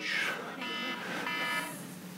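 An electronic alarm sounding two buzzy beeps, each about half a second long: a timer going off to signal thirty more minutes.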